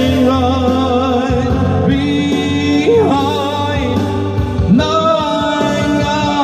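A man singing into a microphone over a recorded backing track, holding long notes with vibrato.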